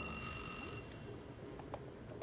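A high, bell-like ringing tone that fades out about a second in, leaving a faint low background.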